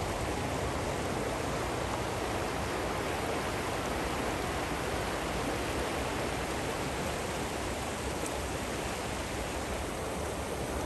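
Fast, shallow mountain river rushing over a bed of rounded stones: a steady, even rush of water with no wind.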